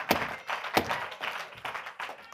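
A handful of sharp thuds at uneven spacing, the two loudest less than a second apart, each with a short echo in a large room.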